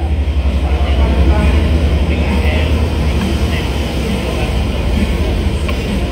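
A loud, steady low mechanical rumble, like a motor vehicle running close by, with faint voices underneath.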